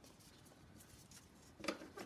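Quiet handling of paper being folded double, a faint rustle that ends in a short crinkle near the end.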